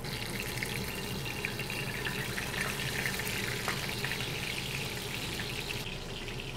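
Whole fish shallow-frying in hot oil in a cast-iron skillet: a steady sizzle.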